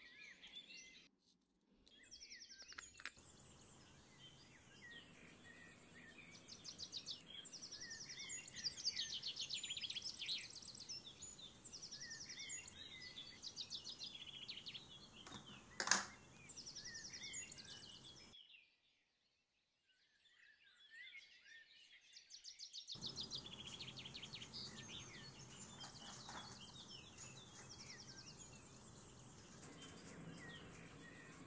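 Small birds chirping and singing faintly, in short calls and quick repeated trills, with one sharp click about halfway through; the birdsong breaks off completely for a few seconds soon after and then resumes.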